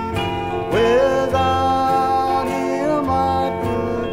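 Gospel song: instrumental accompaniment, with a singing voice with vibrato coming in just under a second in.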